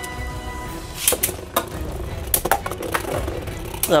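Beyblade Burst spinning tops whirring in the stadium, with sharp clacks as they collide several times; the last is a big hit. Background music plays underneath.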